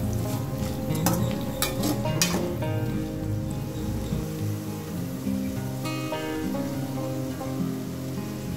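Diced onion sizzling in hot oil in a non-stick pan, with a spatula scraping and tapping through it in several strokes during the first couple of seconds, then a steady sizzle.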